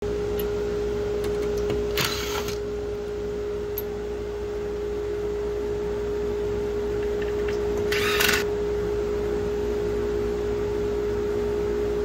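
A cordless drill-driver whirs briefly twice, about two seconds and eight seconds in, backing screws out of the boards' end cleats. Under it runs a constant hum with a steady tone.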